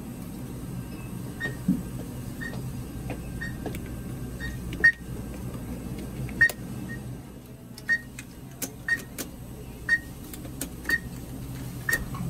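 A Diebold Nixdorf ATM giving short, high beeps about once a second, with several sharp clicks and taps on the machine among them.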